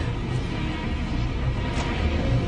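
Ominous horror film score: dense, dark music with a low, pulsing rumble beneath.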